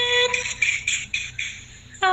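A woman's unaccompanied sung note, heard through a phone voice message, ends about a quarter second in. A few short hissing sounds follow, fading toward quiet, and a new sung phrase starts abruptly at the very end.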